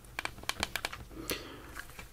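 Buttons on a handheld thermal imager being pressed: a quick run of small plastic clicks, then one more click and the faint rustle of the plastic body being handled and turned over.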